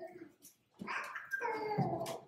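A brief, faint, high-pitched whimpering vocal sound lasting about a second, starting a little under a second in after a silence.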